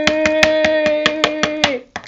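A girl's voice holding one long, steady vowel, with rapid, even tapping at about six taps a second underneath; both stop together shortly before the end.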